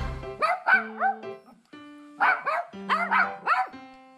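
Toy poodle barking: a few sharp barks in the first second, then a quicker run of about five barks between two and three and a half seconds in, over light background music.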